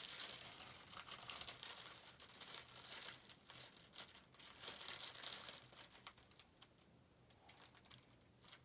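Rustling and crinkling of handled material, busy for about the first six seconds, then dying down.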